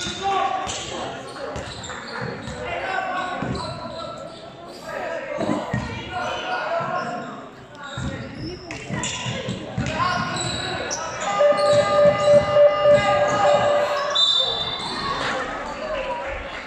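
Indistinct voices of players and coaches echoing around a large sports hall, with a basketball bouncing on the hardwood court. The voices grow louder and more sustained in the later part.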